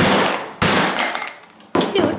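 Claw hammer striking an iPod touch's metal back case on a wooden workbench: three loud blows, each ringing briefly. The case is not giving way.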